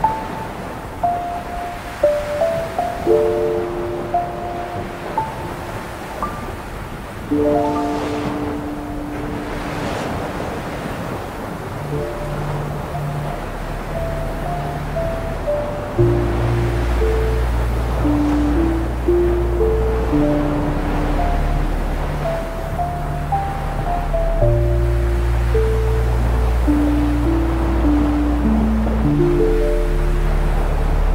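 Slow 396 Hz ambient music: a sparse melody of single held notes, with low sustained chords that come in about twelve seconds in and change every few seconds. Ocean surf washes steadily underneath.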